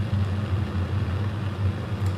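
Lit Bunsen burner flame running with a steady, low-pitched hiss while a metal inoculating loop is held in it to be flame-sterilized.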